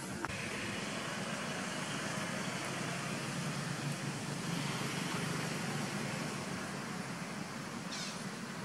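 Steady outdoor background noise, an even rumble and hiss with no distinct call or event, with one brief click just after the start.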